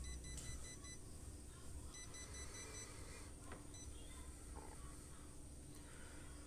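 Faint sounds from a Kyocera ECOSYS copier under test: a low hum that drops away about half a second in, then faint, intermittent high electronic tones.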